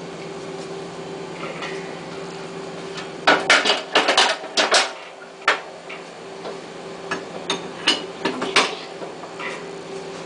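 Stainless steel mixing bowl knocking and clanking against the metal bowl cradle of a Hobart floor mixer as it is lifted and fitted in place, with a dense cluster of metal knocks a few seconds in and a few more near the end. A steady kitchen hum runs underneath.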